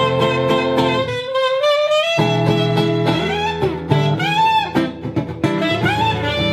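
Saxophone playing a sliding, bending melody over strummed acoustic guitar chords in an instrumental break; the guitar drops out for about a second near the start, then comes back in.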